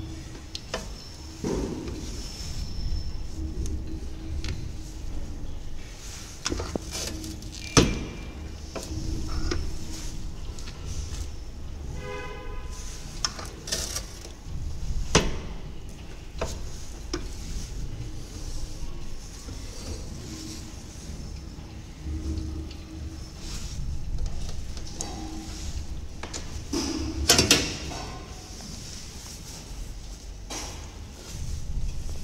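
Manual belt finger puncher worked by hand: scattered metal clanks and knocks from the lever and punch head, the loudest about 8, 15 and 27 seconds in, over a steady low hum, with a brief squeak about 12 seconds in.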